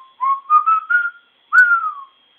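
A person whistling a short melodic phrase: a few quick notes climbing step by step in pitch, then, about one and a half seconds in, a louder held note that slides downward.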